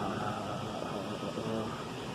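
Steady ventilation hum and room noise in a dining room, with faint, indistinct voices in the background around the middle.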